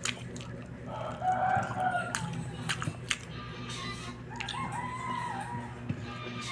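A rooster crowing twice, one wavering call about a second in and another a little past the middle, each lasting about a second, over a steady low hum and a few sharp clicks.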